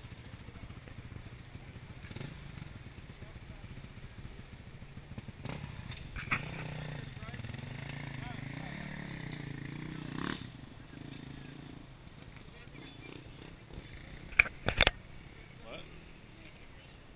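Dirt bike engine running at idle. It grows louder with a wavering pitch for a few seconds in the middle, then settles back. Two sharp knocks come near the end.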